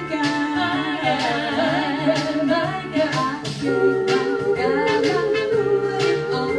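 Female vocal trio singing a 1960s girl-group pop song live over recorded backing music, with a steady bass line under wavering melody.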